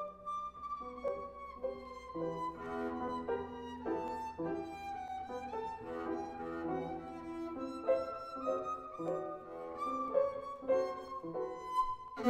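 Double bass bowed in its high register, playing a held, slowly falling melody line over Steinway grand piano accompaniment.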